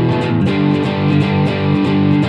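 Electric guitar with a bridge humbucker played through a Yamaha THR10 mini amp on a light crunch setting: a steady, strummed punk chord riff in even, repeated strokes.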